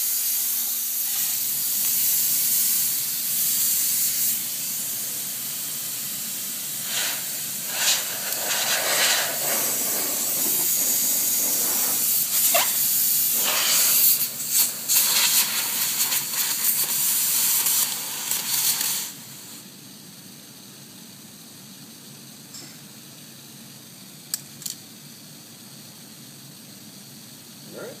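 Pressurized air hissing steadily out of an air-bearing spindle, with irregular clicks and knocks of hands working the spindle and its air line from about a quarter of the way in. About two-thirds of the way through the hiss cuts off abruptly as the air supply stops, leaving only a faint steady noise and a few small clicks.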